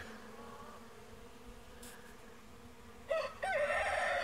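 Steady faint buzz of honeybees flying around their hive, then a rooster starts crowing about three seconds in.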